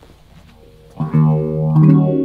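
Electric guitar, a Fender American Deluxe Stratocaster, played through an effects pedal chain with a Keeley Time Machine Boost always on and some distortion. Low amplifier hum for about a second, then a loud chord is struck, a second strum comes just before the end, and the notes ring out.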